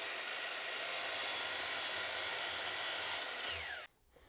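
Miter saw running and cutting through a piece of fir: a steady motor-and-blade noise with a faint whine that falls away near the end before the sound cuts off abruptly.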